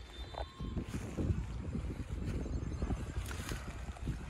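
Wind buffeting the microphone outdoors: a low, uneven rumble with irregular gusts.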